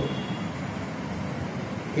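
Steady background noise, an even hiss with some low rumble, and no speech.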